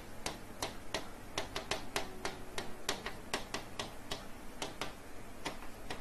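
A pen or stylus clicking and tapping against the glass of an interactive touch-screen whiteboard while handwriting, in irregular runs of a few sharp clicks a second.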